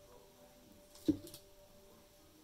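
One sharp tap about a second in, with a smaller one just after, as a plastic toner bottle is handled and set down; otherwise quiet room tone.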